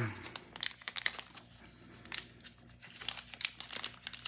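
Clear plastic pen sleeve crinkling as it is handled and opened by hand to slide the pen out: a string of small, irregular, faint crackles.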